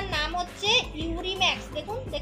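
High-pitched children's voices chattering and calling, with music in the background.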